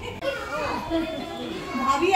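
Overlapping voices of several people talking at once, children's voices among them.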